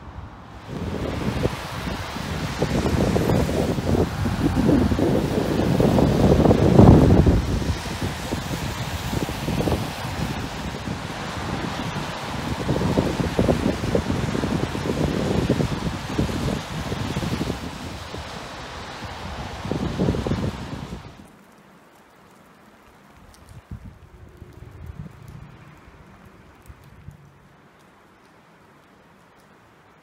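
Wind buffeting the microphone in loud, uneven gusts, which stop abruptly about 21 seconds in, leaving only a faint outdoor background.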